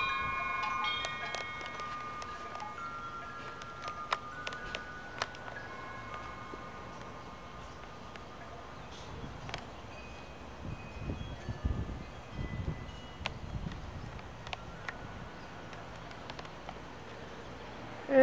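Wind chimes ringing now and then, a few clear tones at a time that ring on and fade. They are strongest at the start. Light wind and a few faint knocks run underneath.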